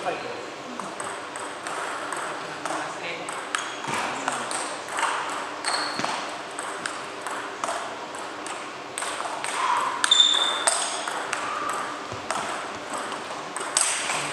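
Table tennis rally: the plastic ball clicking off bats and table in quick, irregular strokes, with voices in the hall.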